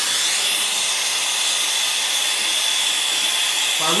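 Brazing torch with an ASCO No. 4 self-mixing tip burning steadily: a continuous hissing rush of flame with a thin, steady high whistle, as it heats a copper pipe.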